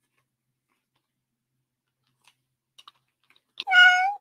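A single short cat meow, about half a second long near the end, sounding as the on-screen cat Pomodoro timer reaches zero and switches from the work session to a long break. It is the timer's end-of-session alert. A few faint clicks come just before it.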